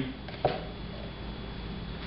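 Quiet kitchen room tone with a steady low hum, broken by one short knock about half a second in.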